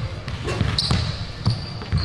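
A basketball bouncing a few times on an indoor gym floor, with short high squeaks of sneakers on the court.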